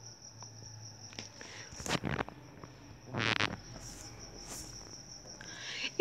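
A cricket chirring steadily in the background, one high-pitched unbroken tone. Two brief noises cut across it, about two and three seconds in, the second the louder.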